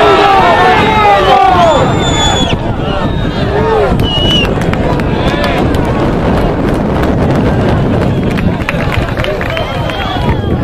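Several people shouting and calling at once on a rugby pitch, loudest in the first two seconds. A single short, steady whistle blast sounds about two seconds in, fitting a referee's whistle, and a brief higher call follows near four seconds.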